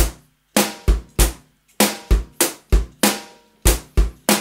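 Electronic drum kit playing a two-bar rock groove: closed hi-hat on quarter notes, bass drum falling in between, and snare on beats two and four.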